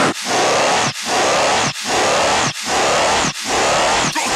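Electronic dance music, a deathstep track at a noise passage: a hiss-like synth noise pulsing in five even blocks, a little under a second each, with short gaps between, and no drums or bass underneath.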